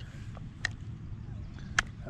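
Three short sharp clicks, the last and loudest near the end, over a low steady rumble, as fingers work a stubborn fishing hook loose from a small bass's mouth.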